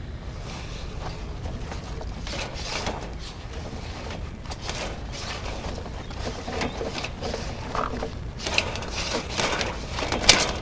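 Sewer inspection camera's push cable being fed down the drain line, with irregular rattling and scraping over a steady low hum; the clatter grows busier and louder near the end.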